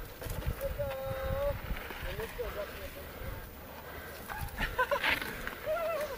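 People on the trail laughing, with a drawn-out vocal call about a second in and more laughter near the end.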